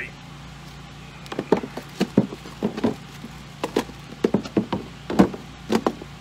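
Irregular knocks and clunks, a dozen or so over several seconds, as a battery and gear are set down and shifted inside a plastic-and-foam Igloo cooler, over a steady low hum.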